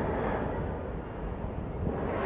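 Steady background noise of a large indoor exhibition hall, with a distant crowd murmuring and a low hall rumble, dipping slightly in loudness in the second half.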